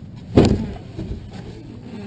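A single sharp clunk about half a second in, from the glider's airbrake control being worked during the checklist, followed by a low rumble.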